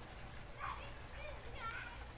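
Two faint distant calls, about half a second in and near the end, over a low steady background rumble: sounds of neighbours out in their yard playing.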